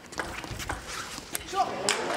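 Celluloid-free plastic table tennis ball clicking sharply off rubber-faced bats and the table in a fast rally, a series of crisp ticks roughly every half second.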